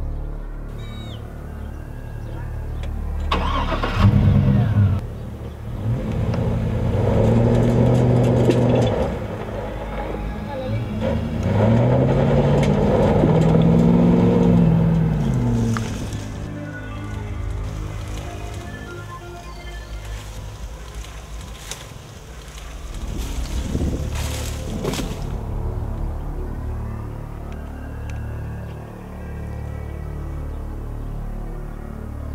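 A car engine revving, its pitch rising and falling several times in the first half, with film background music underneath.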